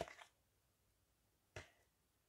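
Faint, sharp clicks from hands laying processed cheese slices on the chicken: a quick cluster at the start and a single click about a second and a half in.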